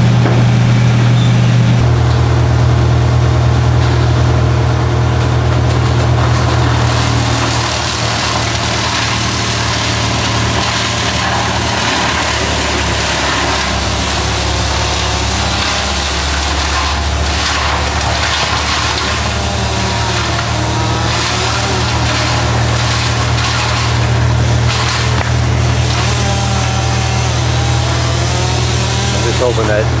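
A large diesel engine idling steadily, a low even hum whose pitch shifts slightly about two seconds in. Faint voices come through near the end.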